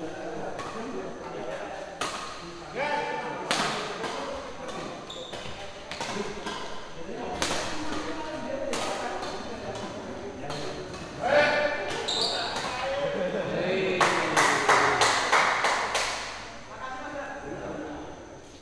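Badminton rackets striking a shuttlecock during a doubles rally: sharp cracks about a second apart, quickening into a fast flurry of hits near the end, with players' and onlookers' voices between them.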